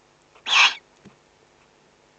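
Eurasian eagle-owl giving one short, harsh, hissing call about half a second in, the kind of rasping call an eagle-owl chick or the female gives at the nest.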